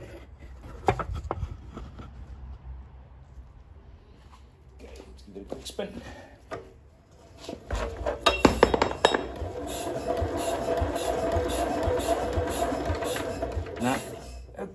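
A 1957 Lister D single-cylinder engine being hand-cranked. Metallic clinks and knocks come about eight seconds in, then a steady whirring as the engine turns over freely: with no compression there is nothing to resist the crank.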